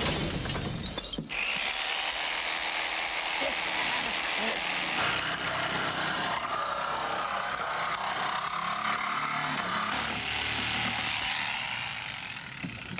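Car window glass smashing in the first second, then a corded electric saw cutting steadily through the sheet-metal roof of a 1959 Cadillac.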